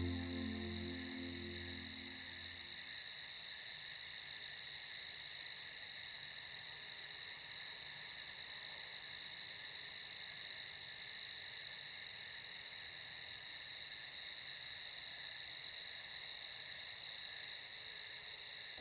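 A steady, high-pitched chorus of night-calling animals, one continuous shrill trill that does not let up. Soft music fades out in the first few seconds.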